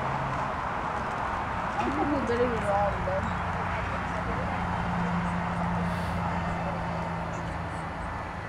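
Indistinct chatter of people talking near the arena rail, with a brief louder voice about two to three seconds in and a steady low hum underneath.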